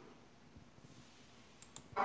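Near-quiet room with two faint clicks of a computer mouse near the end.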